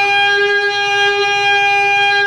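A shofar blast held on one steady note, played back from a recording of shofar music.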